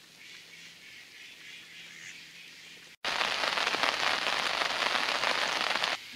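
Rain falling, heard as a steady, even hiss that starts abruptly about halfway through at a cut and is much louder than the faint outdoor background before it.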